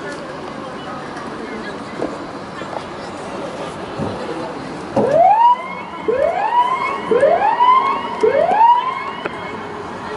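A siren sounding four rising whoops about a second apart, starting about halfway through, over outdoor background noise.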